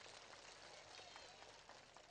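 Near silence: a faint even background hiss.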